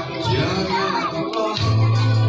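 Pop-song backing track playing through a PA system during an instrumental passage, with children's voices and chatter among the audience; a deep bass note comes in near the end.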